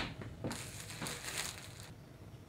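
A plastic bag crinkling and rustling for about a second and a half, after a short knock at the very start.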